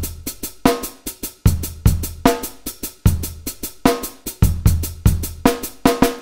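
Programmed MIDI drum-kit beat playing back: kick, snare and hi-hats in a steady pattern. The quantize swing is pushed to the left, so the off-beat hi-hats land early for a rushed feel.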